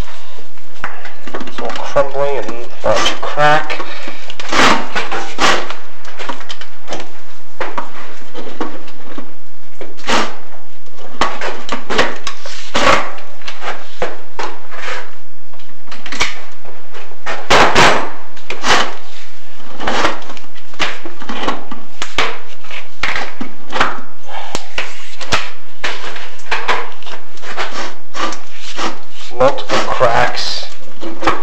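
A chimney inspection camera and its cable scraping, rubbing and knocking against the clay flue tile as it travels down the flue: a loud, continuous clatter of scrapes and knocks.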